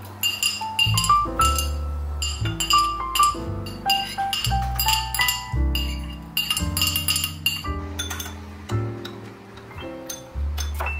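Background music with a steady beat, over a metal spoon clinking against glass bowls as sliced garlic and chopped chili are scraped into a sauce and stirred.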